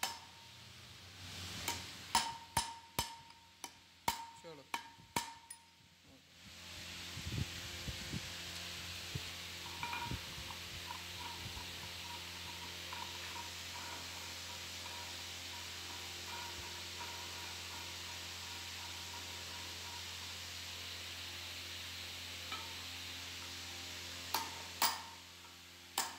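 Steel tool clinking and tapping against a metal pulley and its shaft as the pulley is fitted, a run of sharp ringing strikes for the first six seconds. Then a steady hiss takes over, with two more strikes near the end.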